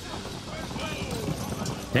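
Horses' hooves clip-clopping on a film soundtrack, mixed with faint voices.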